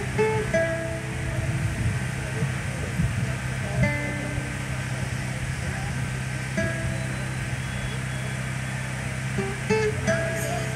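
Acoustic guitar picked slowly, with single notes and chords left to ring, as a song begins. A steady low hum runs underneath.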